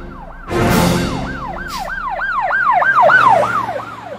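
Police-style siren in a fast yelp: quick rising-and-falling sweeps, about three a second, growing louder toward the end, after a sudden noisy burst about half a second in.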